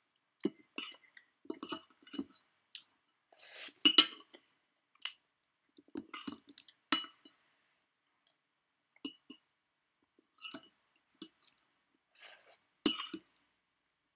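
A metal fork clinking and scraping on a ceramic plate as noodles are scooped up, in irregular strokes with quiet gaps between. The sharpest clinks come about four, seven and thirteen seconds in.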